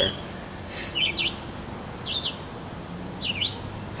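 A bird chirping: three short calls about a second apart, over a faint steady low hum.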